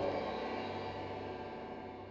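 The final chord of a tango on piano and accordion, held and fading away. The lowest notes drop out at the start, and the rest dies down by the end.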